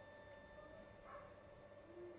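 Near silence: room tone with a faint steady hum and one faint brief sound about a second in.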